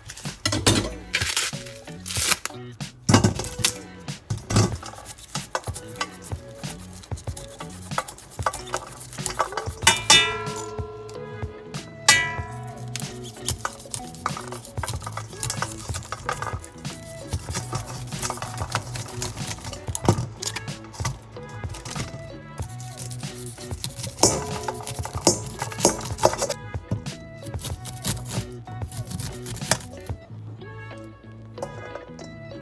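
Fresh corn on the cob being husked by hand and then cut off the cob with a knife into a stainless steel bowl: husk leaves crackling and tearing, then many small clicks and clinks as the knife and falling kernels hit the steel, over background music.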